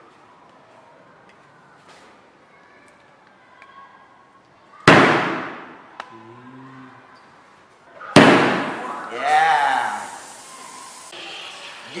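Sharp pops of a sealed aluminium can of 100 Plus carbonated drink being struck by a flicked piece of chewing gum, twice, about three seconds apart. After the second, which pierces the can, the pressurised fizzy drink hisses out as it sprays, for about three seconds.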